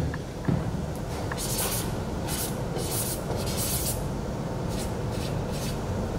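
A marker signing a poster: about seven short, scratchy pen strokes starting about a second and a half in.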